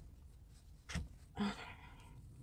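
Faint scratchy brushing of a makeup brush working foundation over the skin, with a single sharp click about a second in and a short hum of the voice just after.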